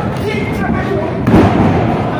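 A wrestler's body hitting the wrestling ring's canvas mat, one heavy thud about a second and a half in, with voices shouting around it.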